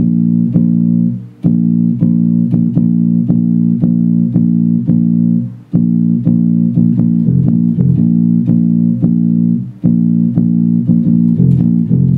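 Electric bass guitar fingerpicked through an amp, playing a steady run of short repeated low notes on B-flat and F, about four or five plucks a second. The notes are cut off three times for a brief rest, about one and a half, six and ten seconds in.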